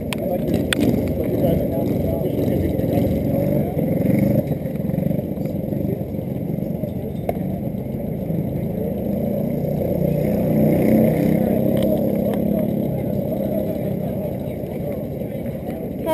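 Several racing kart engines running out on the track together, the drone swelling and fading as the pack passes, loudest a little past the middle.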